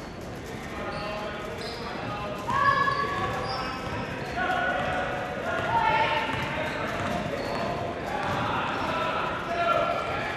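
Basketball dribbled on a hardwood gym floor, with short sneaker squeaks and shouting voices echoing in a large gym.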